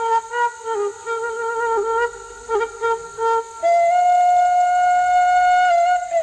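Background music led by a flute: a quick, ornamented melody, then one long held note from a little past halfway.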